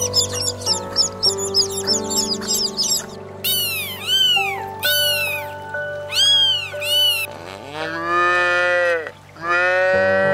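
Baby chicks peeping rapidly for about three seconds, then a cat meowing about five times in short calls, then a cow mooing in two long calls near the end. Background music plays throughout.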